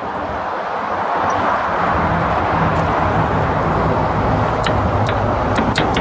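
Steady outdoor road-traffic noise, with a vehicle's low engine hum swelling from about a second in. A few faint clicks come near the end.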